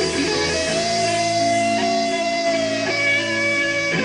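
Instrumental intro of a live rock ballad: an electric lead guitar plays a slow melody of long, sustained notes that bend in pitch, over held chords underneath.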